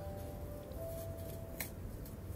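Dry moss and a paper mache shell rustling and crackling as hands pull the moss apart, with one sharp click about one and a half seconds in.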